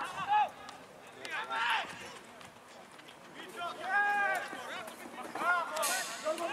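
Voices shouting across an outdoor football pitch during play: short shouted calls near the start and about a second and a half in, a longer drawn-out call around four seconds in, and more shouting near the end. Faint knocks in between.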